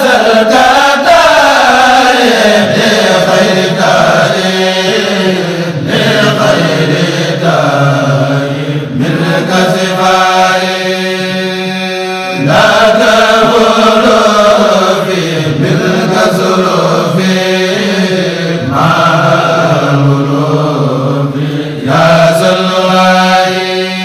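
Mouride devotional chanting (a khassida recitation): voices chanting a melody in long phrases that swell and fall back, over a steady held low note.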